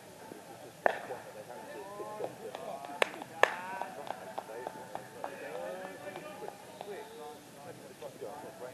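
Distant, indistinct voices talking and calling, broken by three sharp knocks: one about a second in, then two in quick succession around three seconds in.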